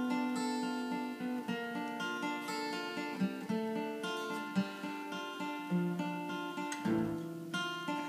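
Acoustic guitar played solo, picked and strummed chords ringing on one after another at a steady pace.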